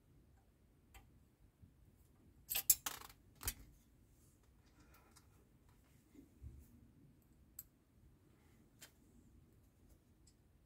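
Small plastic clicks and taps from handling a screwdriver and the parts of a 1:8 scale model car. A quick cluster of sharp clicks comes about two and a half to three and a half seconds in, the loudest part, with a few fainter single clicks later on.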